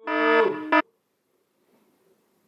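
A short synthesizer music sting, under a second long: a held chord that ends with a brief second stab and cuts off sharply.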